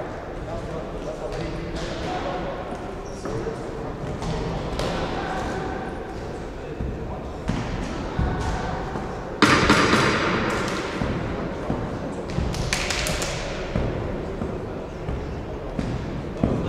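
Voices talking indistinctly in a large echoing hall, with scattered thuds and knocks. About nine and a half seconds in, a loud noisy burst lasts about a second.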